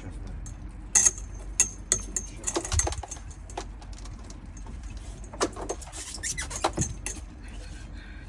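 Sharp metallic clinks and knocks from fittings on a houseboat's deck, the loudest about a second in with a short ring after it, over a low steady rumble.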